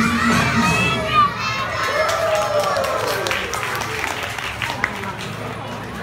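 Backing music stops about half a second in, giving way to young children's high voices shouting and calling out with crowd cheering, which slowly die down.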